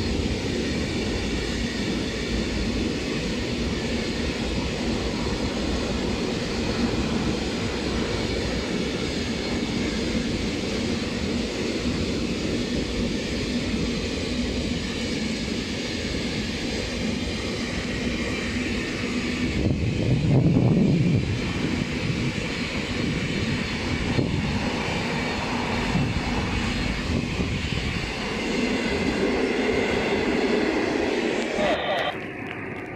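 A train of wagons loaded with long steel rails rolling past at close range: a continuous rumble and clatter of wheels on the track. It swells louder for a moment about two-thirds of the way through.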